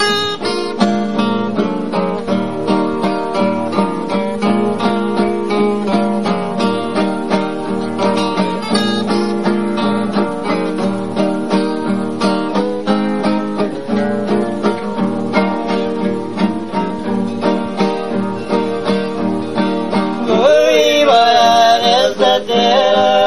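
Acoustic guitar instrumental opening of a Brazilian country-style song, plucked in a steady rhythm. A man's singing voice comes in near the end.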